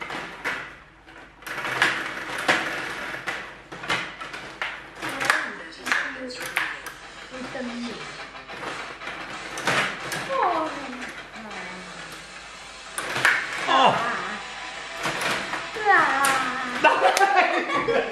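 Stiga Play Off rod table hockey game in play: a steady run of sharp clicks and clacks as the metal rods are pushed, pulled and spun and the puck strikes the players and the boards. A voice calls out briefly about ten seconds in and again near the end.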